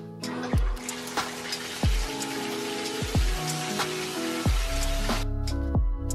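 Background music with deep, falling bass-drum kicks, over the rushing hiss of water pouring from a bathtub spout just after the valve handle is turned on. The water sound stops about five seconds in, and heavier bass from the music takes over.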